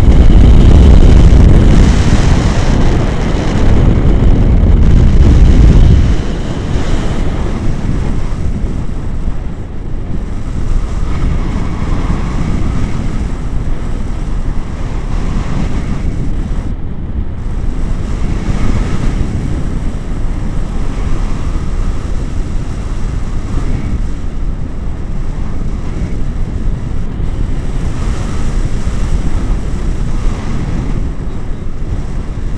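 Wind rushing over an action camera's microphone as a tandem paraglider flies: a loud, low buffeting that is heaviest for the first six seconds and then settles to a steadier rush.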